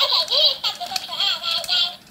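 Talking mimic toy toucan playing back a child's voice at a raised, squeaky pitch, a giggling, laugh-like repeat that stops just before the end.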